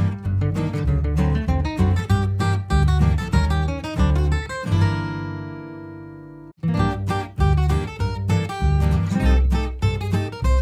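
Background music on acoustic guitar, strummed and plucked. About five seconds in a chord is left ringing and fading, then the music cuts out for an instant and starts again.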